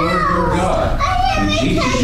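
A person's voice talking, its pitch moving up and down in short phrases.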